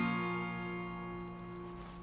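Acoustic guitar chord struck once and left to ring, slowly dying away.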